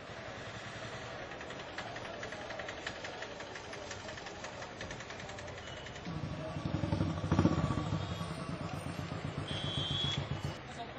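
Street ambience with a motor vehicle engine running. It grows louder about six seconds in, is loudest around seven and a half seconds, then eases off but keeps running.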